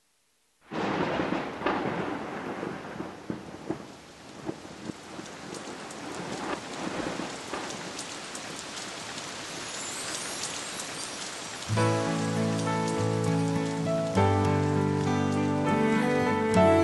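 Rain and thunderstorm sound, with thunder rumbling at the sudden start about half a second in, then steady rain with scattered crackling drops. About twelve seconds in, slow instrumental music with sustained notes begins over the rain.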